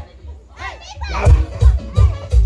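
Dance music in a DJ mix: the heavy kick-drum beat drops out at the start, leaving a second or so of voices, then the beat comes back in.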